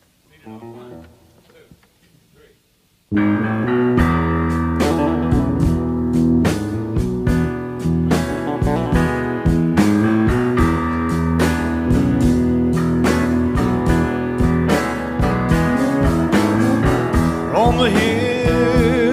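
Quiet studio murmur, then about three seconds in a studio band starts suddenly and plays a loud instrumental intro on electric guitar and bass with a steady drum beat. A singing voice comes in near the end.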